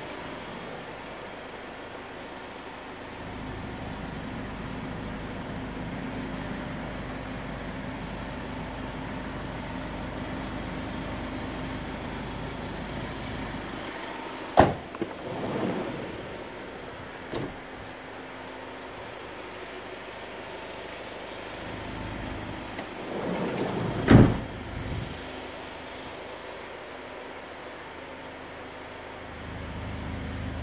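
A Hyundai Starex van's doors and fittings being handled over a steady low hum: sharp clicks and a short rattle about halfway through, another click soon after, then a door shutting with a heavy thump near the end.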